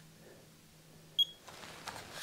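Icare handheld rebound tonometer giving one short, high beep a little over a second in, just as a faint low hum stops. Soft handling rustle follows near the end.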